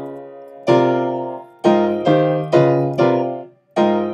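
Yamaha upright piano playing a slow progression of gospel-style chords, about one new chord a second, each ringing and fading. The sound dies away briefly just before a final chord near the end.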